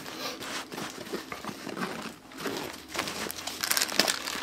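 Plastic packaging crinkling and a fabric bag rustling as hands dig sealed dressing packets out of a side pocket, in irregular bursts with a short lull about two seconds in.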